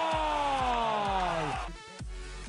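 A football commentator's long, drawn-out goal cry, held on one voice and sliding down in pitch before it breaks off about a second and a half in. Underneath it, electronic music with a steady thumping beat keeps going.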